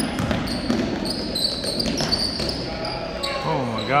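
Basketball dribbled and bouncing on a hardwood gym floor, with sneakers squeaking and people talking in a large echoing gym. A voice rises and falls near the end.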